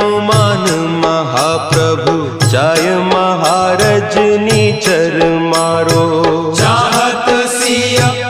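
Hindi devotional hymn to Hanuman, a voice singing over instrumental accompaniment with a steady percussion beat.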